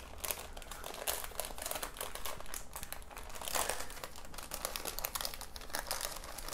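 Sheet of paper crinkling and rustling under the hands as a seaweed-wrapped kimbap roll is rolled and pressed inside it, a steady run of small crackles.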